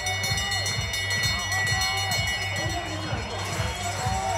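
Brass lap bell rung steadily for about three and a half seconds, signalling the final lap of the race, over music with a low pulsing beat.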